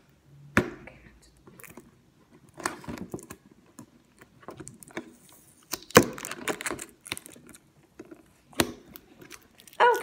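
Cardboard toy box being handled and opened: scattered taps, clicks and rustles, the loudest about six seconds in.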